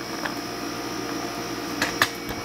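Steady electrical hum holding several fixed pitches, with a short knock near the end.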